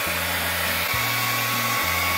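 Hand-held hair dryer running steadily, blowing air onto a sock, over a slow bass line of background music.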